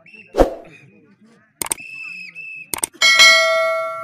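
Subscribe-button animation sound effect: clicks followed by a bright bell ding, struck about three seconds in and ringing out for about a second and a half. A single thump comes just before, about half a second in.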